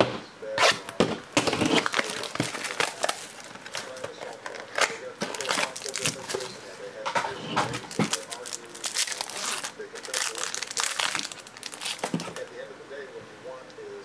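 Clear plastic wrapper of a trading-card pack crinkling and crackling as it is handled and torn open by hand, in many irregular sharp crackles.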